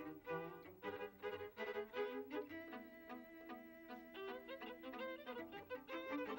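A string quartet playing: violins, viola and cello bowed together, with shorter notes at first and notes held longer in the middle of the passage.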